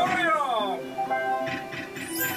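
Merkur El Torero slot machine game sounds: background music with a loud falling, voice-like sound effect near the start as the torero symbol lands, then steady chime tones as a winning line of three aces pays out.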